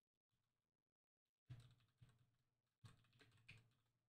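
Near silence broken by four faint computer keyboard clicks, spread over the second half.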